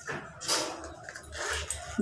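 Rustling of a non-woven shopping bag being handled and opened, loudest about half a second in.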